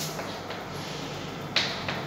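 Chalk writing on a blackboard: a faint scratching, with two sharp clicks of the chalk striking the board near the end.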